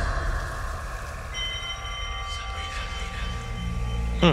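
Trailer soundtrack between lines of dialogue: a low, steady rumbling drone, with thin sustained high tones coming in about a second in.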